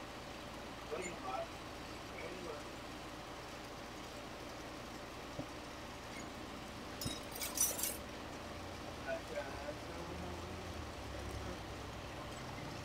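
Steady hiss of a Carlisle CC lampworking torch burning, with a short run of sharp clinks about seven seconds in as rods are handled on the bench.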